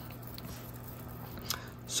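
Faint handling sounds: a few light clicks as a small plastic-cased RC helicopter servo is picked up and turned in the hand, over a low steady hum.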